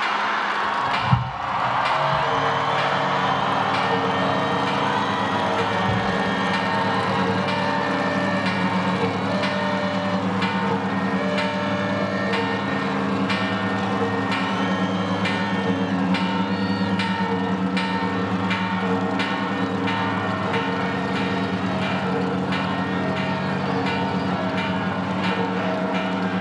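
Large bells ringing on and on, strike after strike, their tones ringing into one another. A single loud bang comes about a second in.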